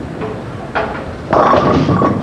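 Bowling ball rolling down a wooden lane, then crashing into the pins about a second and a third in, with the pins clattering and ringing. It is not a strike: the 3, 6 and 10 pins are left standing.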